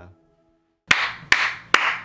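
One person clapping hands slowly and evenly, a little over two claps a second, starting about a second in after a short silence.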